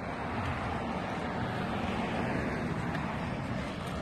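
Road traffic on an adjacent street: a steady hiss of passing cars' tyres and engines that swells slightly around the middle.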